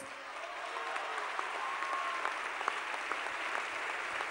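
Large audience applauding steadily, a dense even patter of many hands clapping.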